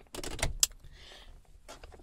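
Automatic gear selector lever of a 1989 Honda Legend being worked by hand, clicking and knocking through its detents. There is a quick cluster of clicks in the first half-second or so, then a single fainter click near the end.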